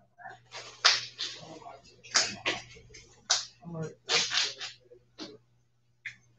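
A deck of trading cards being shuffled by hand: a run of short rustling bursts, about ten in six seconds.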